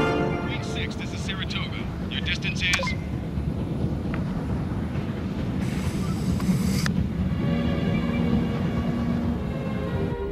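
Steady low rumble of a fighter spacecraft's engines, with brief muffled voices in the first few seconds and a burst of hiss about six seconds in. Faint orchestral music comes back near the end.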